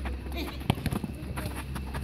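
Soccer ball being dribbled and kicked on artificial turf, with players' running footsteps as a run of short thuds; one sharp thud of a kick a little under a second in is the loudest sound. Players' voices call out over it.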